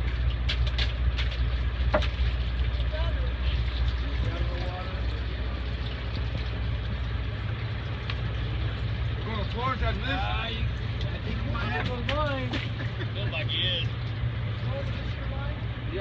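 Fishing boat's engine running with a steady low drone. A few sharp clicks come in the first couple of seconds, and people talk over it around the middle.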